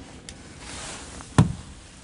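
A single sharp knock with a low thud on a hard surface, about one and a half seconds in, after a faint click and a brief rustle.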